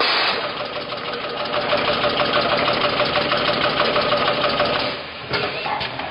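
Automatic coffee capsule bagging machine running: a rapid, even mechanical clatter over a steady hum, which eases off about five seconds in.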